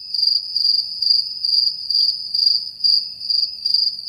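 Cricket chirping: one high, steady chirp pulsing about three times a second, with nothing else beneath it. It cuts in and out abruptly, like an edited-in sound effect.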